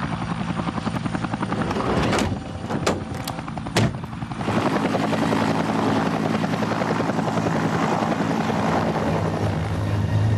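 Light helicopter's rotor chopping steadily as it lifts off, the sound growing fuller about halfway through. A few sharp knocks sound in the first four seconds.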